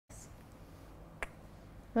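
Quiet room tone with a single short, sharp click a little over a second in; a man's voice starts right at the end.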